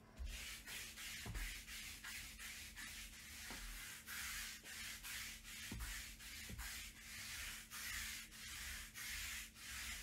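A hand-held roller rubbed back and forth over a table mat, making repeated scratchy rubbing strokes at about one and a half a second, with a couple of soft knocks.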